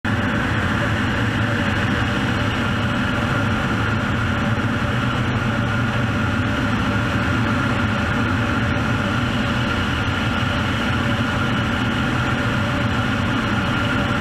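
An agricultural aircraft's engine and propeller running steadily, heard from inside the cockpit, as a loud continuous drone with a steady whine over it.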